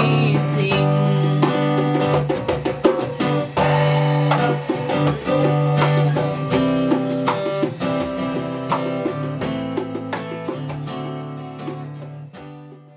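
Acoustic guitar strumming with hand-drum beats, the closing bars of a song, getting gradually quieter toward the end.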